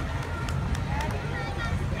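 Low, steady rumble of a 1960s Ford Mustang's engine idling as the car rolls slowly past, with faint voices in the background.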